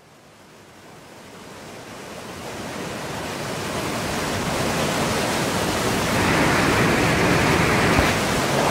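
Steady roar of rushing white water from the Lava Falls rapid, fading in gradually from faint to full level.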